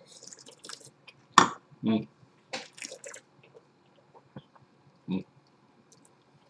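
A person sipping wine and drawing air through it in the mouth, a soft slurping hiss, with a sharp click about a second and a half in. Two short hums of appreciation, "mm", follow, the second near the end.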